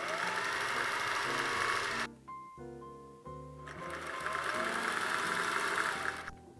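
Vintage Singer sewing machine stitching a seam in two runs: it stops about two seconds in and starts again a little past halfway.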